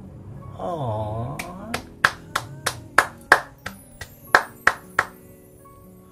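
About a dozen sharp hand claps, roughly three a second, over a song playing more quietly underneath. Just before the claps there is a short wavering vocal note.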